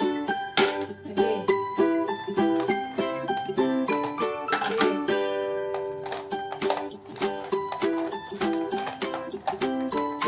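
Background music: a plucked-string tune of quick notes, like a ukulele.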